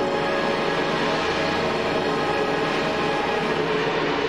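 Concert band of brass and woodwinds playing a loud, sustained full chord held steady.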